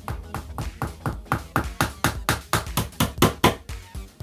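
A small hammer tapping nails into a thin fibreboard back panel on a wooden shelf frame: quick, even taps about five a second that get louder and stop shortly before the end. Background music plays underneath.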